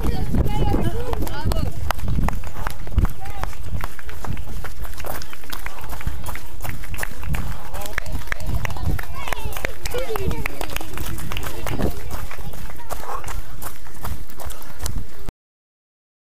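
Running footsteps of a trail runner on a wooden boardwalk and then a gravel track, with spectators' voices around. The sound cuts off abruptly near the end.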